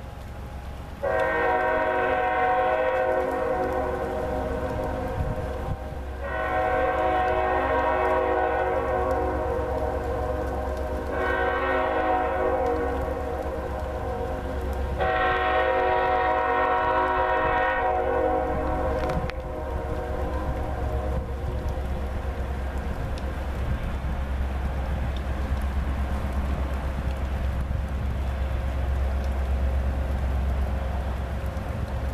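Norfolk Southern ES44AC locomotive's air horn sounding the grade-crossing signal: two long blasts, a short one and a final long one. After the horn stops, the diesel engines rumble on under wind buffeting the microphone.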